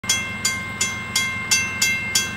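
Railway crossing bell ringing in a steady rhythm of about three strikes a second, warning of the approaching freight train.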